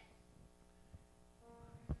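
Quiet church hall room tone with a faint steady hum. About a second and a half in, a soft sustained musical note begins.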